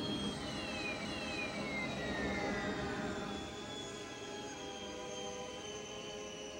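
Landspeeder's hovering engine whine falling in pitch over the first three seconds as it slows to a stop, with a few downward glides, over the orchestral film score.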